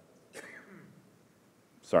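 A man briefly clears his throat, quietly, about a third of a second in, then says "sorry" near the end.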